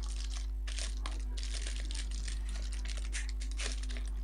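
Clear plastic bag crinkling in many short, irregular rustles as the digital photo frame's stand is pulled out of it, over a steady low hum.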